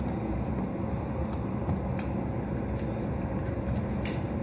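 Steady low rumble of background noise, with a few light clicks scattered through it.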